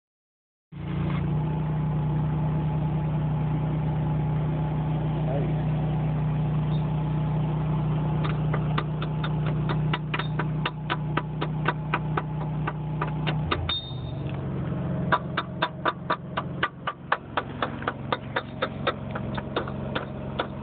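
Welding on a truck's underside: a steady low machine hum runs under the work, and from about eight seconds in sharp, evenly spaced ticks come three or four a second. The hum changes briefly near fourteen seconds.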